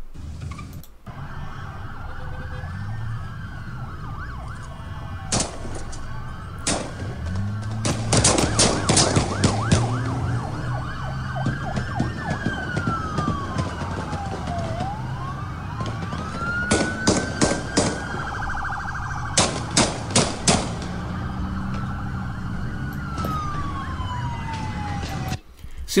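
Emergency-vehicle siren wailing in slow sweeps, rising and falling in pitch, over a steady street rumble. Several quick clusters of sharp cracks break in through the middle and later part.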